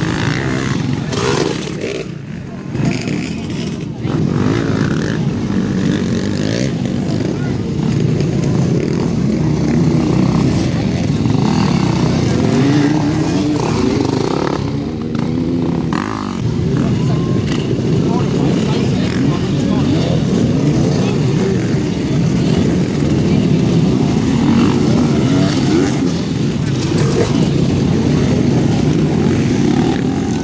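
Several enduro dirt-bike engines running close by, revs rising and falling as the riders blip the throttle through a slow muddy section.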